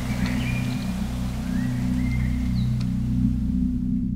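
Background music with a steady low drone, over faint outdoor hiss with a few thin, high bird chirps; the outdoor sound cuts off at the end.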